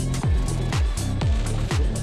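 Electronic background music with a steady kick drum on every beat, about two beats a second, and hi-hat ticks between the kicks.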